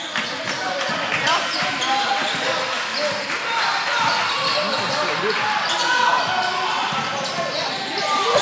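Basketball game sounds echoing in a gym: a ball bouncing on the hardwood court amid overlapping voices of players and spectators.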